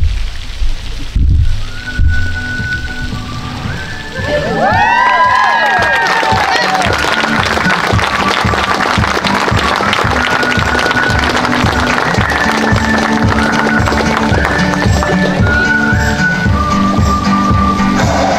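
Recessional music with a steady beat, joined about four seconds in by guests clapping and cheering. A few low thumps come before it at the start.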